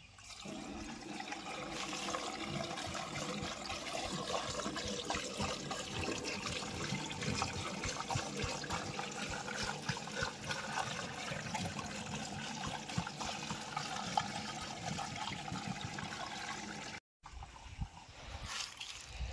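An engine running steadily under a continuous rushing hiss, cutting out sharply for a moment about a second before the end.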